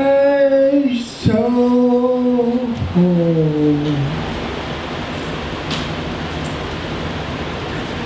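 A man singing unaccompanied through a PA, holding three long notes, each lower than the last, with the third sliding down. About four seconds in the voice stops and a steady hiss carries on.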